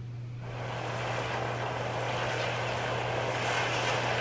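Opening ambience of a music video playing back: a steady rushing noise that fades in about half a second in and slowly swells, over a steady low electrical hum.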